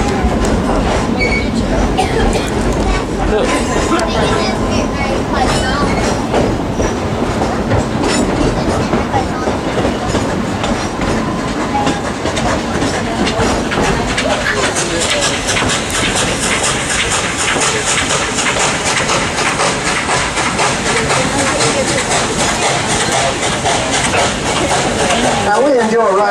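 Narrow-gauge coal-fired steam train running, heard from an open-sided passenger car: a steady clatter of wheels on the rails. A quick, regular pulsing comes in clearly about halfway through.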